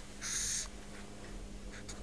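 Quiet room tone with a steady low hum. A brief soft hiss comes about a quarter-second in and lasts about half a second, with a couple of faint ticks near the end.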